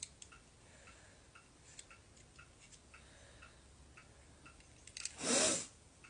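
Faint quick ticking, about three ticks a second, then a short loud breathy snort or sigh about five seconds in.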